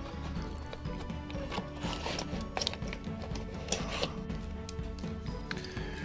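Background music with scattered light clicks and knocks as a CPU cooler is handled and lifted out of its cardboard box and packaging.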